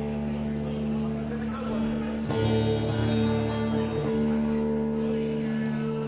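Acoustic guitar strings ringing and sustaining while the guitar is tuned, with a fresh pluck of the strings about two seconds in.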